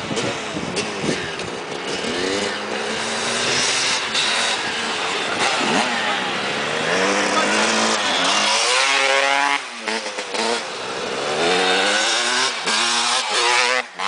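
Dirt bike engines revving and accelerating, the engine note climbing in pitch and dropping back several times as the bikes pull through their gears and pass.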